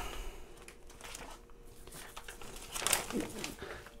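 A plastic vacuum-sealer bag rustling and crinkling faintly as it is handled and opened, a little louder near the end.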